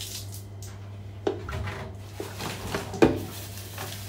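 Light kitchen clatter as a plastic flour jug and a bowl are handled during hand-kneading of dough: a few scattered knocks, the sharpest about a second in and again near three seconds, over a steady low hum.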